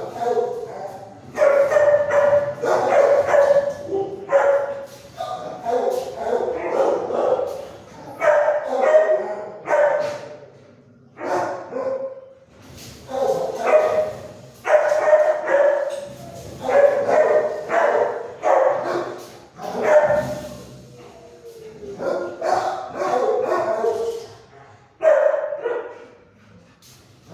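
Several dogs barking and yipping over and over in a kennel block. The barks come in loud bursts one after another with hardly a pause, and each one rings on in the hard-walled room.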